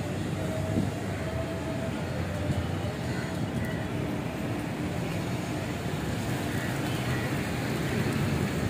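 Steady city street noise: a continuous low rumble of traffic, with faint voices in the background.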